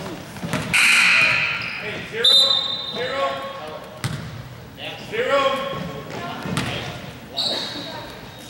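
A basketball bouncing a few times on a hardwood gym floor, the thuds echoing in the large hall, with voices from the players and spectators.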